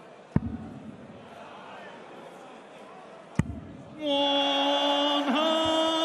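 Two steel-tip darts thud into the dartboard about three seconds apart over a low arena murmur. From about four seconds in, a loud, long held voice comes in, steady in pitch: the drawn-out score call of the darts caller.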